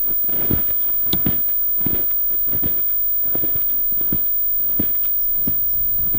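Footsteps in deep snow: a person walking steadily through knee-deep fresh snow, about two steps a second.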